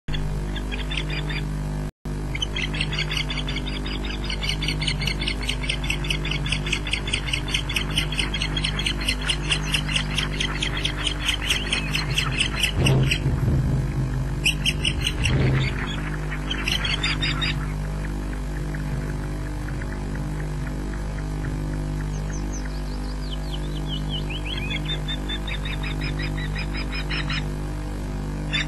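Osprey calling from the nest: long runs of rapid, high whistled chirps, several a second, breaking off a little before halfway and resuming in shorter runs later, over a steady low hum. Two brief rustling bursts in the middle come as the male osprey lands on the nest and takes off again.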